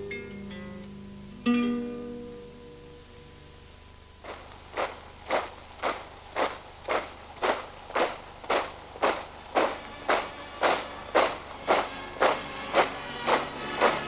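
Acoustic guitar: a last chord rings out and fades, then about four seconds in a steady march-time strumming begins, about two strokes a second.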